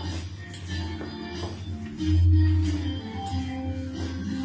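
Music for a children's circle-dance song, with a loud low bass note swelling about two seconds in.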